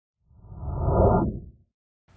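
Whoosh sound effect of a channel logo ident: a low, rushing swell that builds for most of a second, then cuts off and fades out quickly.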